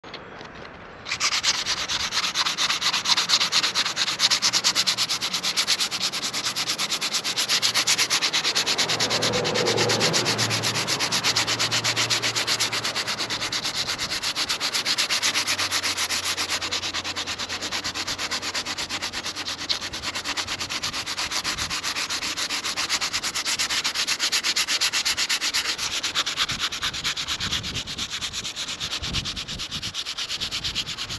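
Hand sanding of a gel coat repair on a fibreglass boat hull: a round perforated sanding disc held flat under the palm and rubbed in quick, steady back-and-forth strokes, starting about a second in. The strokes are fairing the repair patch down flush with the surrounding gel coat.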